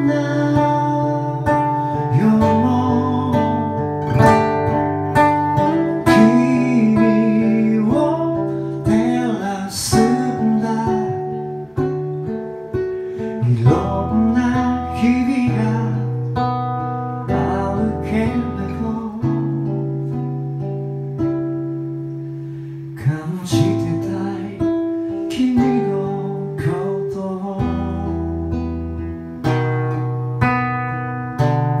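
Cutaway acoustic guitar playing a slow song, with a singing voice over it at times.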